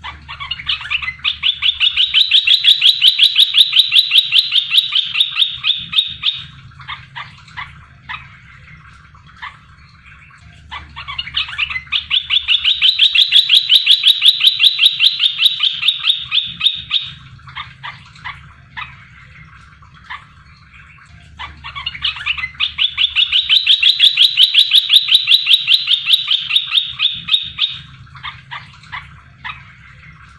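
Olive-winged bulbul (merbah belukar) song used as a lure call. Each phrase is a rapid run of notes that swells and fades over about five seconds, followed by a few scattered short notes. The phrase comes three times, about ten seconds apart.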